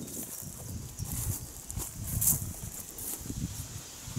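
Soft, irregular footfalls on grass, with a few brief rustles of plants brushing past.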